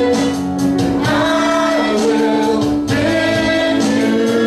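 Live church worship music: a praise band of keyboard, acoustic guitar and drums, with a man and a woman singing long held notes into microphones.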